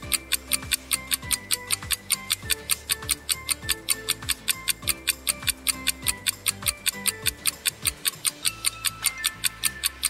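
Countdown-timer music cue: clock-like ticking, about four to five ticks a second, over a repeating bass line and short synth notes.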